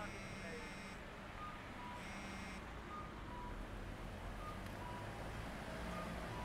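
A mobile phone's message alert tone sounding twice, first for about a second and then more briefly, followed by a few faint short beeps, over a low steady rumble.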